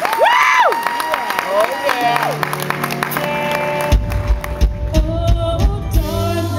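Audience applause and whoops as a live show-choir number ends, over a held high note that stops about two seconds in. The live band then starts the next song with a sustained chord, and drums and bass come in with a steady beat about four seconds in.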